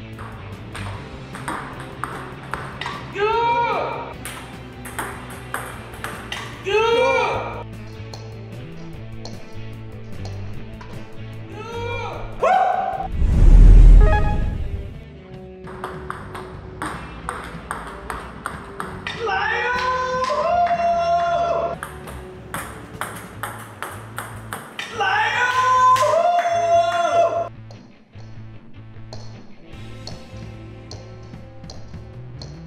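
Table tennis ball clicking again and again off the table and bat during serves, over background guitar music. Voices call out several times, and a loud low boom comes about halfway through.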